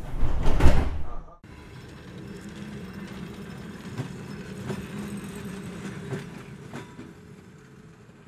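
Electric passenger train at a platform: a loud burst of door noise as the train's door shuts, cutting off sharply after about a second and a half, then the steady low hum of the standing train with faint clicks.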